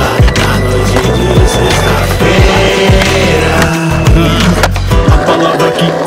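Longboard wheels rolling on asphalt, a steady low rumble that drops out briefly near four seconds and again about five seconds in. Rap backing music with a steady beat plays over it, without vocals.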